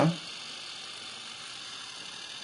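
A faint, steady hum with hiss and no distinct events.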